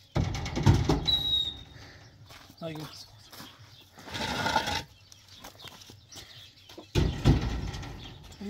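Hollow concrete blocks being handled and set down on a stack: three bouts of concrete knocking and grating on concrete, near the start, around the middle and near the end.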